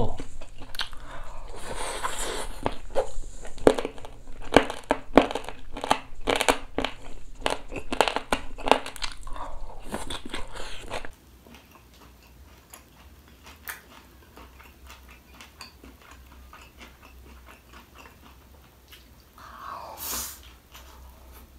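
Close-miked chewing and mouth sounds of someone eating a shredded-potato pancake: wet smacks and crisp clicks in quick succession. About eleven seconds in the sound drops suddenly to a quiet room with only a few faint clicks.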